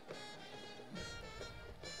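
A band playing music with sustained brass notes, heard faintly from across the stadium.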